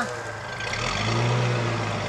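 Vehicle engine idling with a steady low hum that grows louder about a second in, as the tow vehicle eases the chained trailer forward.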